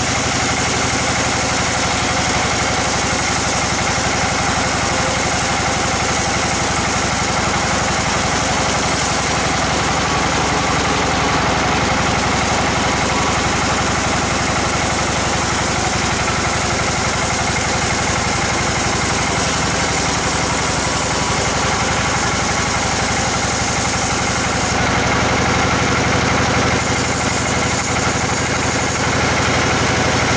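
Band sawmill running steadily, its bandsaw blade cutting lengthwise through a large log of red bayur (Pterospermum) wood, with a continuous dense machine noise.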